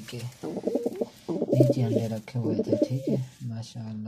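Domestic pigeon cooing at its nest, a run of warbling coos from about half a second in to about three seconds in.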